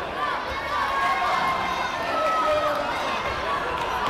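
Crowd of spectators and coaches at a taekwondo match, many voices shouting and chattering over one another.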